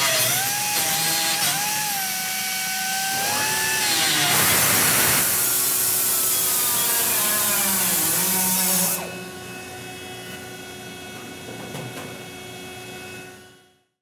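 Pneumatic grinder whining at speed with a wavering pitch, then cutting into the steel car body with a loud hiss for about four seconds. After that a quieter steady hum carries on until it fades out near the end.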